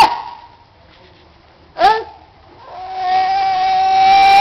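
A toddler crying: a short sob about two seconds in, then a long, steady wail that builds from about three seconds in.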